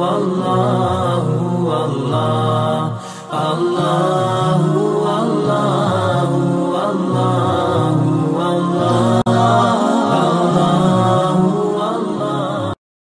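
Melodic devotional vocal chanting, one voice line carried without a break, with a brief dip in level about three seconds in and a momentary dropout just after nine seconds.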